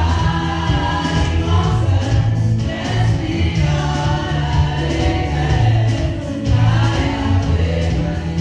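Gospel worship song sung by a choir of voices with keyboard accompaniment and a strong low bass line.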